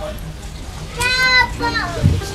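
A high-pitched voice, a child's by the sound of the tags, holds one steady note for about half a second about a second in, then slides down in pitch.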